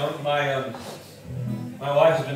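A man's speaking voice over a few low acoustic guitar notes, each held for well under a second.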